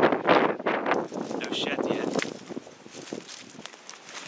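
Rustling and crunching of dry fallen leaves underfoot, with handling noise, loudest over the first two seconds or so and then quieter.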